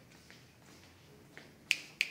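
A few sharp clicks over a faint background, the two loudest close together near the end.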